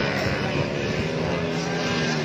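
Several motocross bike engines running on the circuit at once, their engine notes overlapping and holding fairly steady.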